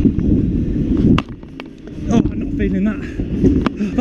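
Stunt scooter wheels rolling over a concrete skatepark floor with a low rumble, then a few sharp clacks from the scooter between one and two seconds in.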